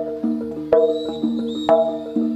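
Live jaranan gamelan music: pitched metal percussion plays a repeating pattern, with a sharp struck accent about once a second. A thin high held tone enters about three quarters of a second in.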